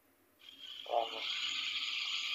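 Silence, then steady phone-line hiss coming in about half a second in, with one short voice sound about a second in, as the far end of the call opens up.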